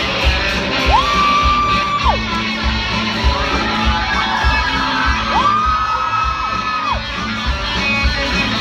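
Live band playing: electric guitars and drums, with long high notes that glide up, hold for about a second and slide back down, twice.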